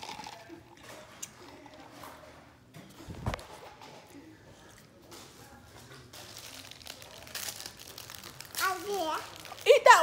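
Low handling and rustling noise with a single knock about three seconds in, then a child's high-pitched voice talking near the end.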